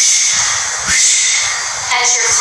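A woman breathing out hard twice, the second exhale starting sharply about a second in, as she exhales with each step-up push in a demonstration of uphill breathing.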